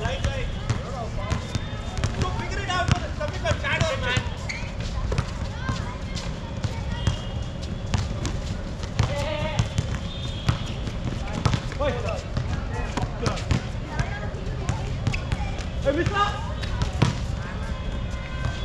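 A basketball bouncing again and again on a hard outdoor court during play, with sharp knocks scattered throughout and players shouting short calls now and then over a steady low rumble.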